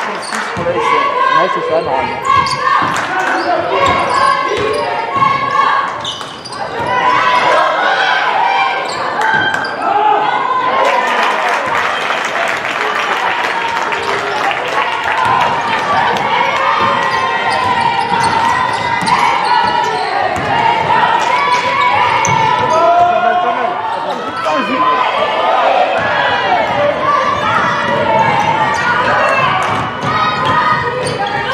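Basketball being dribbled on a hardwood court during a game, with players' and spectators' voices calling out throughout, echoing in a large sports hall.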